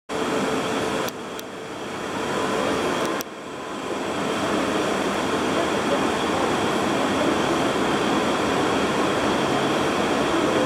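TEM18D diesel shunting locomotive running as it approaches hauling passenger coaches; the steady engine and rail noise grows gradually louder.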